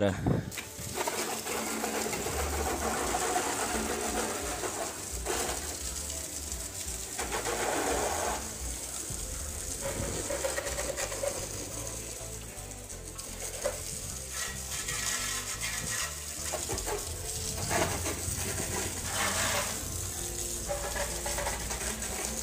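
Water from a garden hose spraying over a motorcycle to rinse off soap: a continuous hiss and splash that rises and falls as the spray is moved around the bike.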